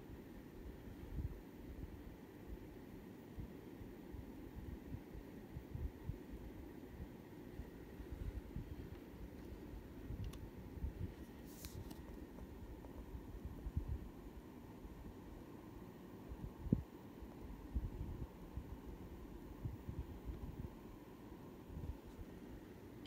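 Quiet room tone with scattered faint low thumps and rubs from a handheld camera being moved, a brief soft hiss about twelve seconds in and a single sharper knock a few seconds later.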